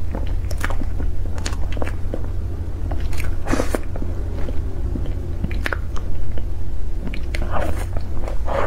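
Close-miked eating of soft cream cake: wet chewing and mouth sounds with scattered small clicks, the fullest bite about three seconds in, over a steady low hum.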